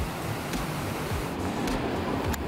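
Steady rushing hiss of water pouring down a cascading wall fountain. About a second and a half in, the brighter hiss drops away to duller street noise.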